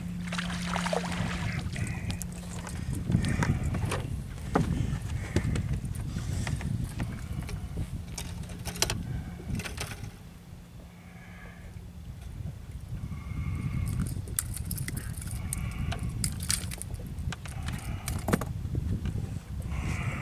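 Wind rumble and water lapping around a bass boat while a bass is reeled in and lifted aboard, with scattered clicks and knocks from the reel and from handling the fish. A steady low hum runs through the first half and stops about ten seconds in.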